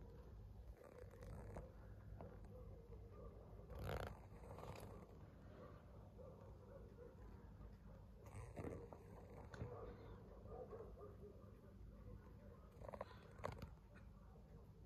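Near silence: a faint steady low hush from the snowy night, broken by a few faint, brief sounds about four, eight and a half, and thirteen seconds in.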